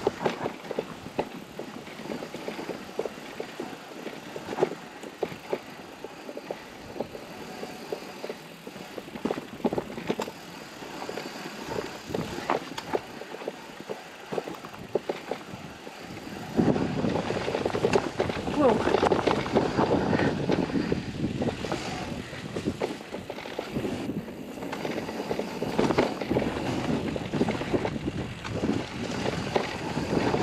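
Nukeproof MegaWatt electric mountain bike riding down a dirt forest trail: tyre noise with frequent clicks and knocks from the bike going over roots and bumps. From about halfway through it gets louder, with more rush of wind and ground noise on the chest-mounted camera.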